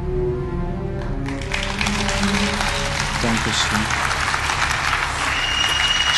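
Slow background music with long held notes, then audience applause breaking out about a second in and carrying on over the music.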